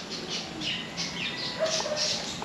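Small birds chirping rapidly and repeatedly, several high chirps a second, with a brief lower squawk about one and a half seconds in.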